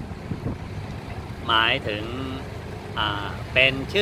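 A man speaking Thai in two short phrases with pauses between them, over a steady low rumble of background noise.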